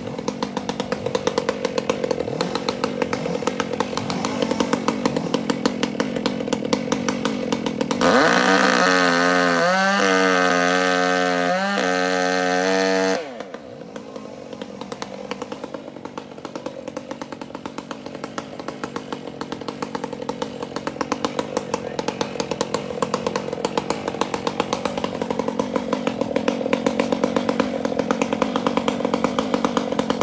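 Two-stroke chainsaw idling with a fast, even pulse. About eight seconds in it is revved to full throttle for about five seconds, its pitch wavering, then drops suddenly back to idle.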